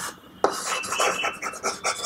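Chalk scraping on a chalkboard as a word is written by hand: a quick run of short scratchy strokes starting about half a second in.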